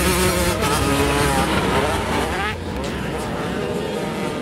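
Motocross dirt bike engine revving up and down as it rides across a dirt track. About two and a half seconds in, the sound drops in level and turns duller.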